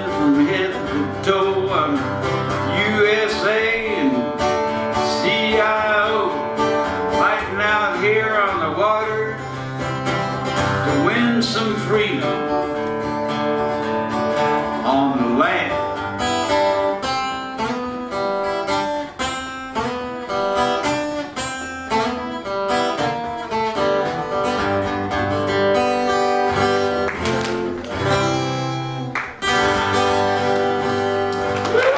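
Two acoustic guitars playing an instrumental passage of a folk talking blues, with steady, evenly strummed chords through the second half.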